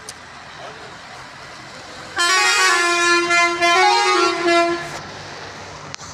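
A vehicle horn sounds loudly for about three seconds, starting about two seconds in, its pitch stepping between two notes partway through, over steady street background noise.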